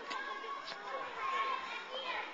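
Young children's voices calling out and chattering as they play, with two short knocks about half a second apart in the first second.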